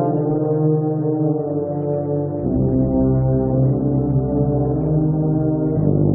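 Wind band playing slow, sustained chords, with tubas and euphoniums carrying the low brass. A deep bass note comes in about two and a half seconds in, and the chord shifts again near the end.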